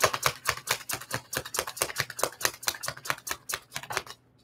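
Tarot deck being shuffled by hand: a fast run of card clicks and slaps, about seven or eight a second, stopping right at the end.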